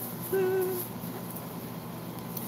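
A woman's short hummed "mm" at a steady pitch, about half a second long, a little after the start, over low room hiss.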